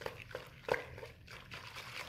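A hand swishing through warm soapy water in a plastic bucket, a quick irregular run of small sloshes and splashes, the loudest about two-thirds of a second in, as dish soap is mixed in to raise bubbles.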